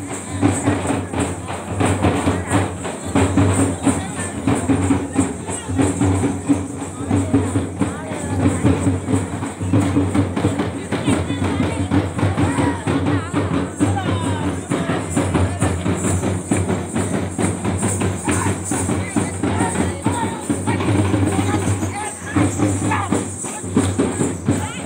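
Procession drums beaten in a fast, steady rhythm, with a low beat recurring about once a second, over a crowd of voices.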